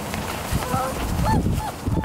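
Vizsla puppies about six weeks old giving several short, high whines and yips as they play, starting about half a second in.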